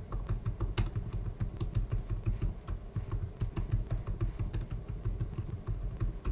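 Typing on a computer keyboard: a run of quick, irregular key clicks, with a low hum underneath.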